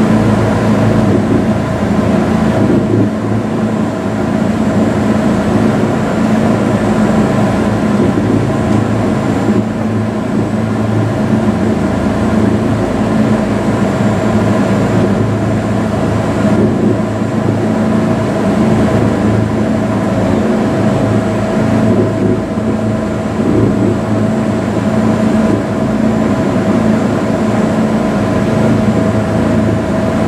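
Inclined (funicular-style) elevator car in motion along its track, heard from inside the car: a steady mechanical hum with a constant low drone and a few steady higher tones, unchanging throughout.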